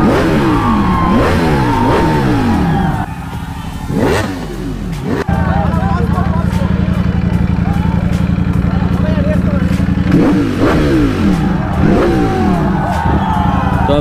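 Ducati Panigale V4S's V4 engine revved repeatedly at a standstill, sharp throttle blips rising and falling about once a second. From about five seconds in it runs steadily, then is blipped again a few times near the end, with crowd voices underneath.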